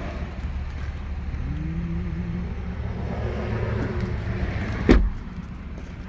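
Power liftgate of a 2019 Cadillac XT5 whirring open, a faint motor whine rising in pitch, then a single sharp thump near the end.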